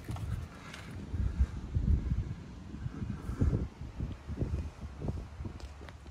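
Wind buffeting the microphone: an irregular low rumble that swells and dips throughout.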